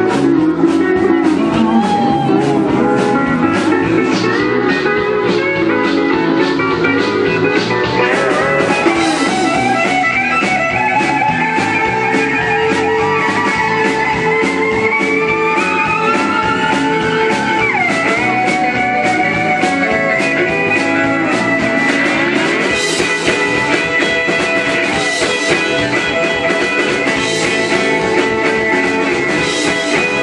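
A live country band plays an instrumental break, with a bowed fiddle and an electric guitar over a steady drum beat, and several notes sliding up and down in pitch.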